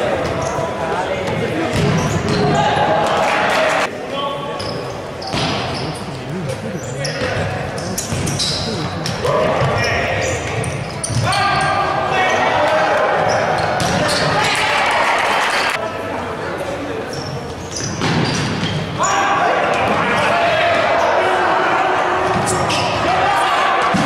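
Futsal ball being kicked and bouncing on a wooden sports-hall floor, echoing in the hall, amid voices calling out from players and spectators.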